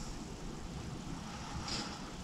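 Low, steady rumble of strong wind in the background.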